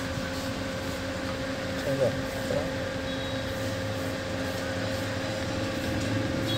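Steady mechanical hum with faint constant tones inside a car. A short vocal sound comes about two seconds in.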